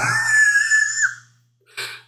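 A person's high-pitched vocal squeal that glides sharply up in pitch and holds for about a second before cutting off.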